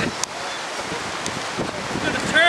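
Storm wind blowing over the microphone, a steady rushing noise, with a couple of faint clicks.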